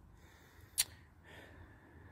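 A single short, sharp click a little under a second in, over a quiet background.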